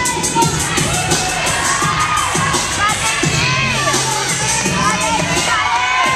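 Spectators cheering and shouting for a gymnast's tumbling pass, over the floor-routine music with its steady beat.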